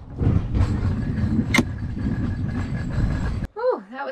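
Anchor chain running out as the anchor is let go, a rough rattling rumble that starts suddenly just after the call to drop, with one sharp clank about a second and a half in. It cuts off abruptly near the end.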